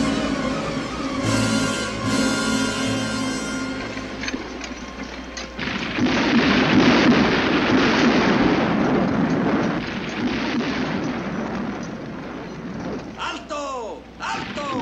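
Film score music for the first few seconds, then, about six seconds in, a loud crash of thunder that rumbles on for several seconds.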